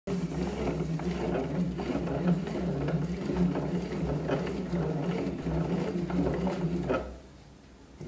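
Bat-rolling machine running its rollers over the composite barrel of a 2021 DeMarini CF Zen baseball bat, breaking the barrel in under pressure: a steady mechanical running sound that stops about seven seconds in.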